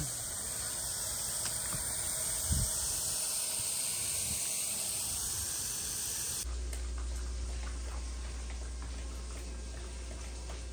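Garden hose spraying water onto asphalt roof shingles around a turbine vent: a steady hiss of spray and splashing, part of a hose test for leaks. About six seconds in it cuts off suddenly to a quieter low hum.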